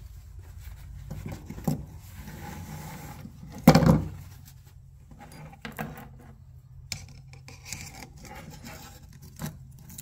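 Steel saw chain clinking and rattling as it is handled and worked around a chainsaw guide bar on a wooden bench, with scattered small clicks and scrapes. The loudest sound is a short clatter about four seconds in.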